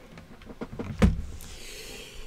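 A computer keyboard being slid aside across a desk mat: a few light clicks and one knock about a second in, then a soft sliding rustle.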